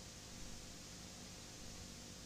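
Faint, steady hiss with a low hum underneath: the noise of a blank stretch of videotape.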